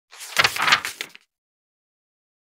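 A short burst of rushing noise, about a second long, swelling to two sharper peaks and dying away: a whoosh-like intro sound effect.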